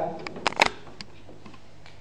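A few sharp clicks and knocks of handling, as a plastic mop bucket is picked up and set out. The loudest is a double knock about half a second in, and after about a second only quiet room tone remains.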